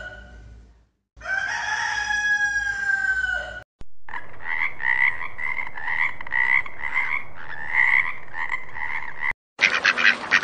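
A rooster crows once, a long call falling slightly in pitch. After a short break a frog croaks in a steady series, about two calls a second.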